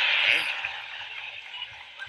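Live audience laughing and applauding after a punchline, loudest at the start and dying away over the next two seconds.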